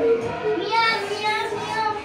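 Music with children's voices, some of it sung.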